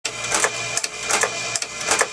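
An automatic wire and tubing cutter running as it feeds and cuts 22-gauge brass reed wire into lengths. It makes a regular clacking stroke about two and a half times a second over a steady motor hum.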